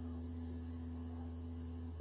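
Elegoo Mars resin printer's Z-axis stepper motor raising the build plate: a steady low tone over a constant low hum, the motor tone stopping just before the end.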